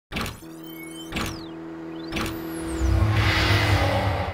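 Sound-designed intro sting: three sharp hits about a second apart with high sweeping tones and a held low tone under them, building into a loud low rumbling swell near the end.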